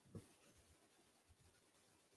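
Near silence: room tone, with one faint soft low thump just after the start.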